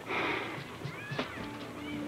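A dog whining in short high-pitched whimpers, with soft background music holding steady notes from about halfway through.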